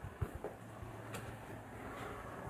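Quiet room tone with a few faint, soft knocks in the first half second and a faint click just after one second.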